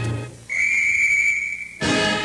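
The theme music breaks off and a single steady, high whistle note is held for about a second, then brass-band circus music comes back in.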